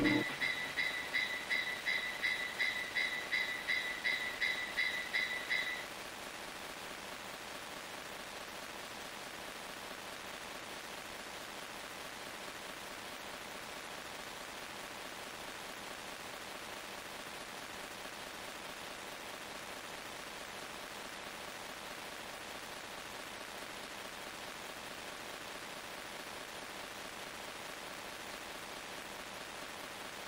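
A high, ringing two-pitch tone repeating about three times a second and fading out over the first six seconds, like an echo tail at the end of a phonk track. A steady faint hiss follows and runs on.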